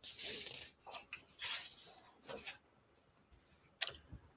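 Faint rustling and rubbing of paper as the pages of a hardback picture book are handled and turned, with a sharp flick of a page just before the end.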